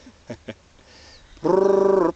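A man's voice holding one steady low hum for about half a second, starting loudly near the end, after two faint clicks early on.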